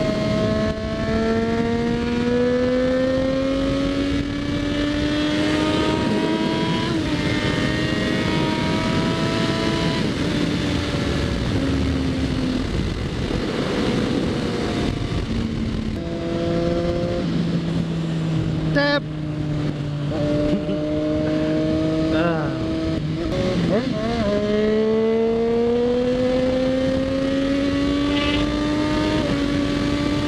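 Triumph Daytona 675 inline-triple engine under load, accelerating through the gears: the pitch climbs steadily in each gear and drops at each upshift, several times over, with a few quick rev changes about two thirds of the way through.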